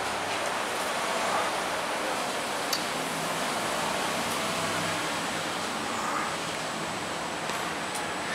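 Steady background noise with a faint low hum, the sound of a traction elevator travelling in its shaft behind closed doors. One small click comes nearly three seconds in.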